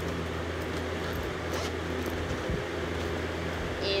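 A steady low mechanical hum, with a few faint light ticks in the first half.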